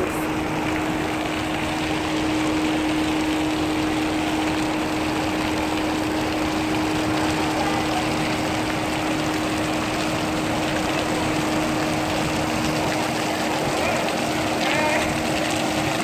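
Steady machinery drone of a cruise ship's deck, with one constant hum under an even rushing noise.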